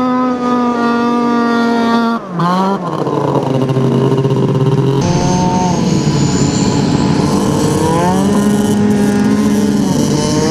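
Snowmobile engines running hard on sand at a steady high-pitched note. About two seconds in the note drops and revs straight back up. In the second half a thin rising whine rides over the engine, and just after eight seconds the engine revs up again.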